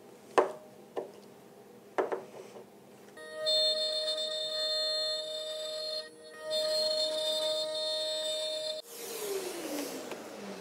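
A few sharp metallic clinks as bolts and washers are fitted by hand. Then the i2R CNC router's spindle runs with a steady high whine, breaks off briefly partway through, and winds down with falling pitch near the end as it spins down.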